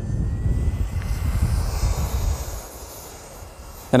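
Brushed electric motor of a JEGS Holeshot 2WD RC stadium truck running on a 3S LiPo, a faint rising whine early on, with tyre hiss that swells about two seconds in and then fades as the truck moves off, over low wind rumble on the microphone.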